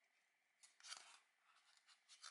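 Faint scratchy rubbing of a paper-faced foam board as it is handled and flexed along its V-groove, once about half a second in and more weakly near the end.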